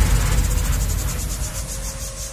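Breakdown in a jungle dutch dance track: the beat drops out, leaving a low bass rumble under a fast, buzzing, evenly repeating high-pitched roll that fades down steadily.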